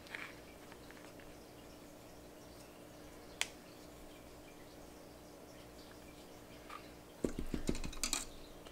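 Quiet room tone with a faint steady hum, broken by a single sharp click a little over three seconds in and a quick run of soft knocks near the end: a paintbrush and plastic paint palette being handled while watercolours are mixed.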